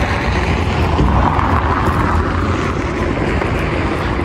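Strong wind buffeting the handheld camera's microphone, a steady, loud rumbling roar.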